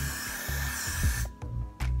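Aerosol freeze hairspray sprayed from a can onto the hair roots: one continuous hiss that cuts off a little over a second in.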